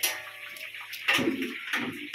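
Dough rounds for sweets frying in hot oil in a large iron kadhai, bubbling and sizzling, with a metal skimmer stirring and sloshing through the oil twice in the second half.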